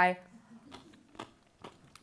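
Faint, scattered crunching clicks of a person chewing a bite of salt-pickled cucumber, just after a woman's voice trails off.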